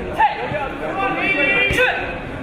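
Several voices shouting and calling over crowd chatter in a large, echoing sports hall.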